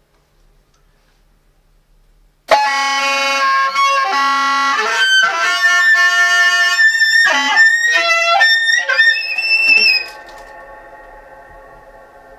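Soprano saxophone starting suddenly about two and a half seconds in, playing a loud, fast-changing run of notes into an open grand piano. Near ten seconds it stops and a quieter ringing of several held tones from the piano strings carries on.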